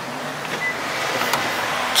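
Steady outdoor street noise: the hiss of passing traffic.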